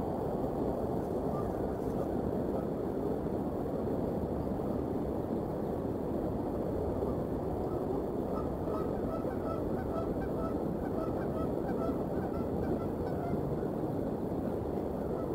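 A string of distant goose honks, about three a second, starting a little past halfway and fading near the end, over a steady low rush of background noise.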